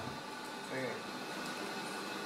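Steady indoor room noise with a faint voice speaking in the background a little under a second in.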